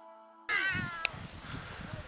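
Soft music fading out, then, after a sudden cut to outdoor sound, a short high-pitched cry that falls in pitch, followed by a sharp click and low background noise.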